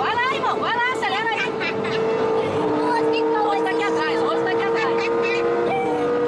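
Audi car's engine holding a steady drone at high highway speed, over 200 km/h, heard from inside the cabin with tyre and wind noise beneath; a second, lower steady tone joins partway through. A voice is heard briefly at the start.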